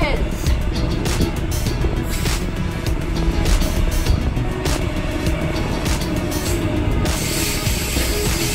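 Background music over the steady rumble of a double-deck electric train running under the bridge.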